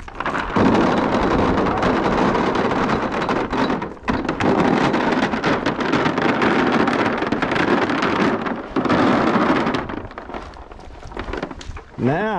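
Feed pellets poured from a plastic bucket into a black plastic feed trough, a steady stream of pellets hitting the trough, dipping briefly about four seconds in and again near nine seconds, and stopping about ten seconds in.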